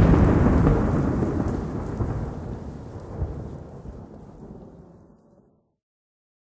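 Rolling thunder with rain, a sound effect closing the song, fading out steadily to silence about five seconds in.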